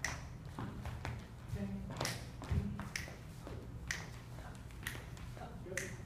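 Finger snaps keeping a slow, steady beat, about one a second, while dancers' shoes tap and slide on a wooden floor.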